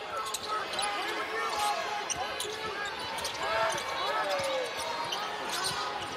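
Basketball being dribbled on a hardwood court with short, repeated sneaker squeaks, over a steady murmur of an arena crowd.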